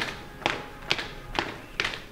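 Background music carried by a sharp, evenly spaced tapping beat, about two taps a second.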